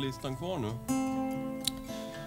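A man's voice briefly, then about a second in a single acoustic guitar chord strummed and left ringing, slowly fading.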